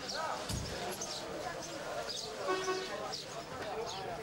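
Men's voices talking in conversation, not the narrator, with a dull thump about half a second in.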